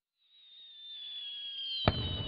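Fireworks: high whistling that grows louder out of silence and slowly falls in pitch, then a sharp bang near the end as a shell bursts.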